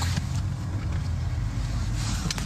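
Car driving, heard from inside the cabin: a steady low rumble of road and engine noise with a faint hiss of air.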